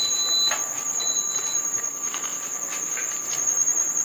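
Chewing a mouthful of potato taco, with faint crunches now and then, over a steady high-pitched whine in the background.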